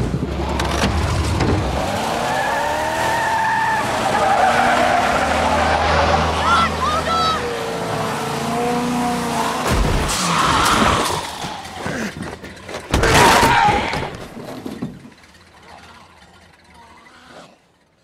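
Pickup truck engine running hard with tyres skidding and squealing, mixed with growling voices and scuffling; a loud hit about thirteen seconds in, after which the sound drops away.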